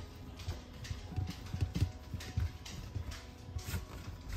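Soft background music with faint, irregular rubbing and soft knocks of hands rolling bread dough into ropes on a metal baking tray.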